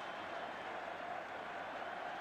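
Football stadium crowd cheering after a goal, a steady wall of noise from the packed terraces.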